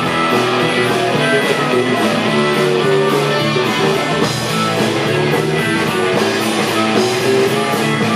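Live rhythm & blues band playing with electric guitar, bass, keyboards and a steady drum beat, and a blues harmonica played through the vocal microphone over it.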